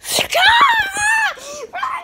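A child screaming: one loud, high scream held for about a second with a wavering pitch, then shorter cries. A few soft knocks sound under the first scream.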